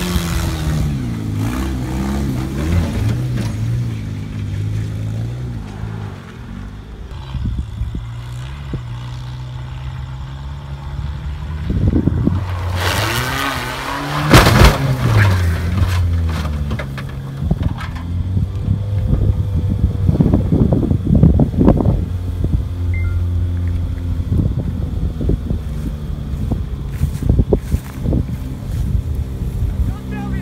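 Saturn sedan's engine running hard and revving up and down as it drives at a jump, with a loud crash about halfway through as it lands on and hits the Chevy Blazer, and a few more knocks afterwards while the engine keeps running.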